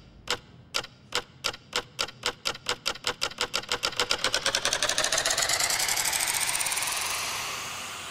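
Suspense sound effect of ticks that speed up steadily from about two a second into a fast rattle, rising in pitch as they run together, then fading near the end.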